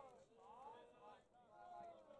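Faint, distant voices talking and calling out, no words clear.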